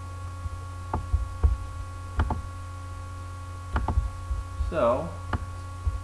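Steady electrical mains hum on the narration track, broken by about five sharp clicks of a computer mouse as a line is drawn on the video. A brief murmur of voice comes near the end.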